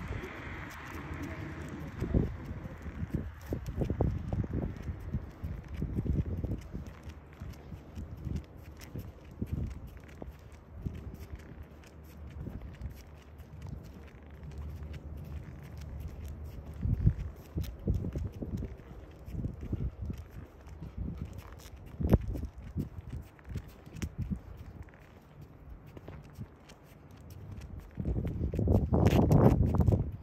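Footsteps of a person and a dog walking on a concrete sidewalk, an irregular run of soft low steps and scuffs. A louder rush of noise comes near the end.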